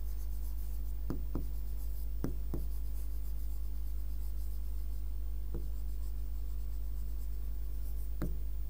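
Marker pen writing on a whiteboard: a few short strokes in the first three seconds and one more past halfway. A steady low hum runs underneath.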